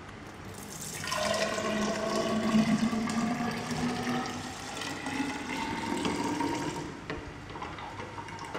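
Soil-water suspension being poured from a stainless-steel dispersion cup into a tall glass sedimentation cylinder. It is a steady splashing pour that starts about a second in and eases off near the end. This is the dispersed sample being transferred for a hydrometer test.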